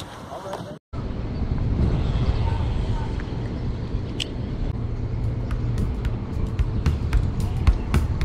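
Steady low rumble of wind and nearby road traffic, with a few light clicks as a spinning reel is handled. The sound drops out briefly about a second in.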